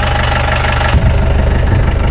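Mahindra jeep engine idling steadily close by, with a brief knock about a second in.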